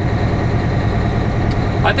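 Semi truck's diesel engine running steadily while moving slowly, heard inside the cab, its sound mostly low-pitched. A faint click about a second and a half in.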